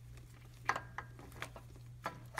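A few light metallic clicks and clinks as a pair of camshaft phasers and their secondary timing chain are worked into place on the camshafts, over a steady low hum.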